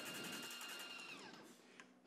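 Faint high whine from an electric airless paint sprayer pump, dropping in pitch and fading out about a second and a half in, as the motor winds down.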